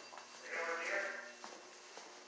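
A person's voice at a distance: one drawn-out, wavering vowel lasting under a second, near the middle.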